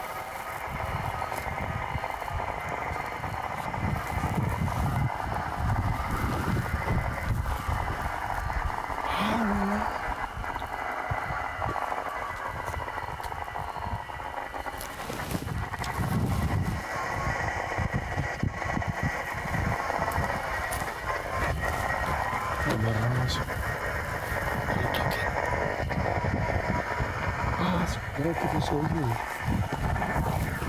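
Indistinct, low voices over a steady droning background that runs throughout, with an irregular low rumble underneath.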